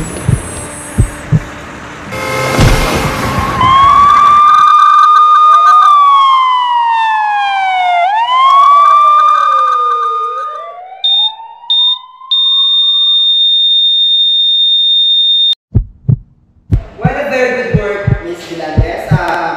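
A brief burst of noise, then an emergency-vehicle siren wailing, its pitch sliding down and back up in overlapping sweeps. A few short high electronic beeps follow, then one long steady beep that cuts off suddenly.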